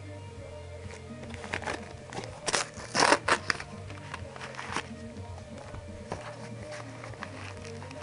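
Paper envelope rustling and being torn open, in a run of short crackles loudest about three seconds in, over steady background music.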